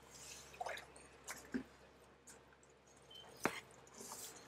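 Faint wet squishing of a fillet knife slicing through raw blackfin tuna flesh on a cleaning table, broken by a few short sharp ticks of the blade and fish against the board, the loudest about three and a half seconds in.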